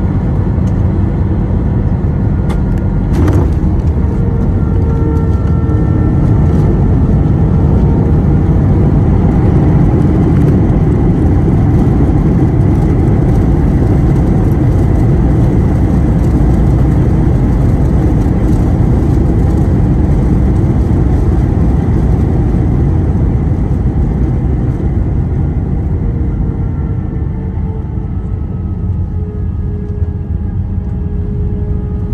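Inside the cabin of an Airbus A321 landing: a knock about three seconds in as the main wheels touch down. Then a loud, steady roar of engines and wheels rolling on the runway as the jet slows, easing off near the end.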